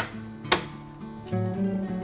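Acoustic guitar background music, with one sharp click about half a second in from a multimeter's rotary selector being switched to continuity mode.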